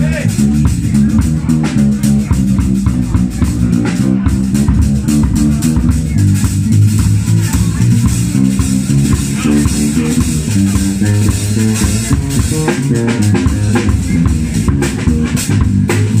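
Live band music carried by an electric bass playing a moving line of low notes over a drum kit keeping time.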